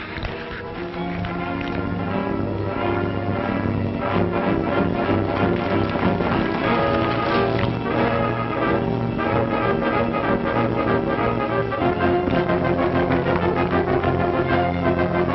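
Orchestral film score with brass, held chords shifting from note to note.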